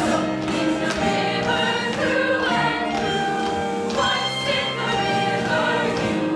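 Stage musical cast singing together in chorus over accompaniment, in long held chords.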